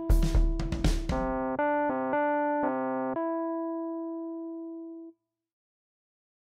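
The end of a band's song: a few drum hits over a held chord, then a run of keyboard chords changing about every half second, finishing on one long chord that fades and cuts off about five seconds in.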